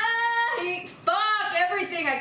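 A woman's voice singing loudly with no accompaniment heard: one high note held steady and cut off about half a second in, then, after a brief gap, another sung line that bends in pitch from about a second in.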